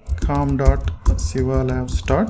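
Typing on a computer keyboard, a run of keystroke clicks, with a man speaking over it in two short phrases.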